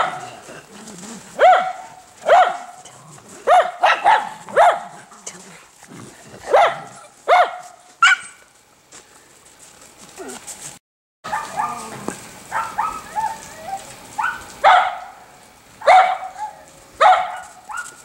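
Schnauzers barking during play: short, sharp barks coming in clusters of two or three, about fifteen in all.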